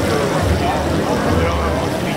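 Indistinct voices of several people talking over a steady low rumble.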